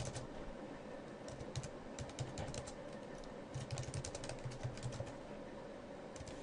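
Faint typing on a computer keyboard, the keystrokes coming in short bursts with brief pauses between them.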